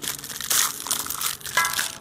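Clear plastic popsicle wrapper being crinkled and pulled off an ice pop, in irregular crackles, loudest about half a second in.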